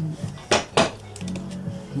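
Two sharp clinks of hard objects knocking together, about a third of a second apart, over steady background music.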